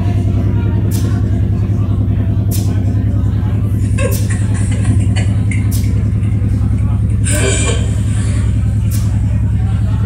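Electronic music through a club PA: a loud, pulsing low synth drone with a soft high tick about every second and a half. Over it are crowd voices and a brief noisy burst about seven seconds in.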